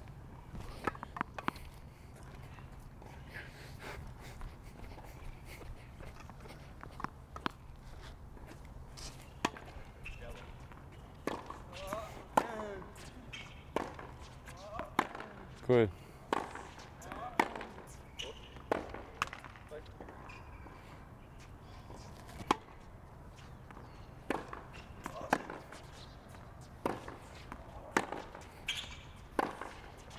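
Tennis balls struck by rackets and bouncing on a hard court during a rally: sharp pops every second or so, irregular. Several short falling vocal grunts from the players come with some shots.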